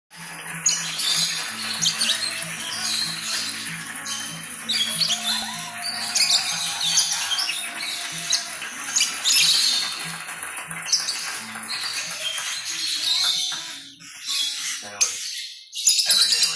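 Green-cheeked conures chirping and squawking in many short, high bursts over steady background music.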